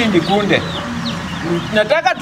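Chickens clucking, mixed with voices.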